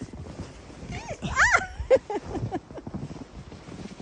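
A woman's high laughing squeals that rise and fall in pitch, the loudest about a second and a half in, over close rustling and crunching of snow and snowsuit fabric as she moves about in deep snow.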